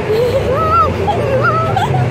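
High-pitched, wavering squeals from a young woman's voice in about three drawn-out bursts, an excited squeal, over a steady low hum.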